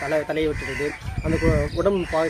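A man talking, with a chicken calling in the background.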